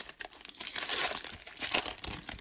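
Foil wrapper of a Donruss Elite football card pack being torn open and crinkled by hand, a continuous crackling rustle.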